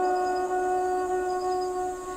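Soundtrack music: a single wind-instrument note held steady, fading slightly near the end.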